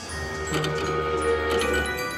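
Willy Wonka video slot machine's bonus-round music and reel-spin sound effects, steady tones with a stepping bass line, as the last two reels stop and a win is landed.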